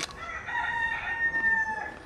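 A rooster crowing once: one long, held call that sinks slightly in pitch before cutting off.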